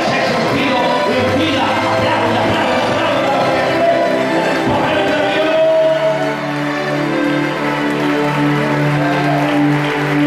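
Worship music with long held notes, mixed with many voices at once. The held notes grow more prominent about six seconds in.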